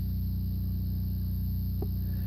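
Diesel generator running steadily as it charges the battery bank through the inverter/charger, a low even hum with a fine regular pulse. A light click near the end as a button on the battery monitor is pressed.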